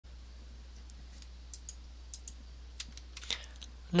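Faint, irregularly spaced clicks, about a dozen, like computer keys or a mouse, over a steady low electrical hum, with an intake of breath shortly before speech begins.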